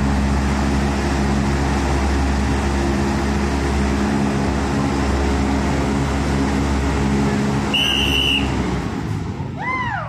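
Giant stage fan blowing a strong steady rush of wind, with a low motor hum, winding down about nine seconds in. A short, steady high whistle-like tone sounds about eight seconds in.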